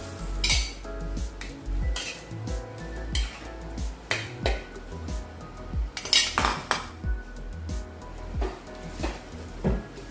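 Clinks and scrapes of a bowl and metal spoon against an aluminium pan as diced sponge gourd is tipped into the broth, over background music; the loudest clatter comes about six seconds in.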